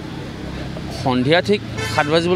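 A pause with a steady low background hum, then a man's voice resumes speaking about a second in.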